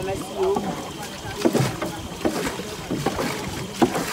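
A few irregular knocks and thumps on a wooden boat, the sharpest near the end, over faint voices.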